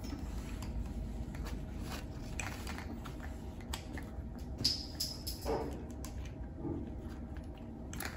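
Faint clicks and small rubbing sounds of plastic IV tubing and syringe connectors being handled and twisted together on a stopcock set, over a low steady hum. There is a brief high squeak about four and a half seconds in.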